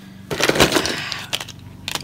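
Plastic makeup tubes and compacts clattering against each other as they are dropped into a cardboard box: a rattling clatter of about half a second, then two single sharp clicks.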